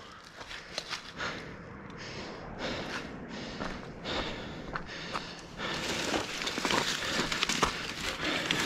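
Specialized Stumpjumper Evo Alloy mountain bike descending a loose dirt singletrack: tyres running over dirt with many small clicks and rattles from the bike. It gets louder about six seconds in.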